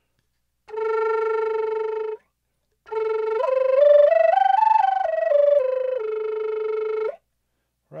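Native American flute played with flutter-tonguing, the tongue rolled like an R against the roof of the mouth. A held low note of about a second and a half, a short break, then a phrase that climbs note by note about an octave and comes back down to the low note and holds it.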